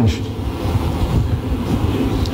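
A low, steady rumble of background noise with no clear events, heard through a lecture-hall microphone.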